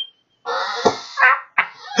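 A man laughing hard: a breathy, drawn-out burst of laughter starting about half a second in, with a shorter burst just after.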